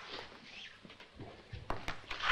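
Quiet room with faint movement as a person sits down in a chair, then a couple of sharp clicks or knocks near the end.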